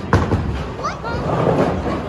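Bowling alley sounds: a sharp knock just after the start as a bowling ball lands on the lane, then the low rumble of balls rolling down the lanes, with a few short rising squeaks and a louder burst of clatter past the middle, over background chatter.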